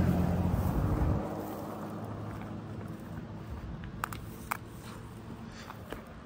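A motor vehicle passing on the road above, its engine hum dropping away about a second in and fading to a faint drone. Two sharp clicks come about four seconds in, half a second apart.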